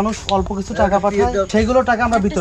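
People talking: continuous speech with no other sound standing out.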